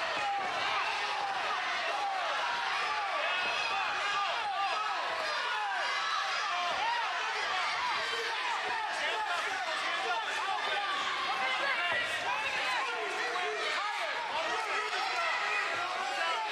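Crowd shouting and cheering, many voices yelling over one another without a break.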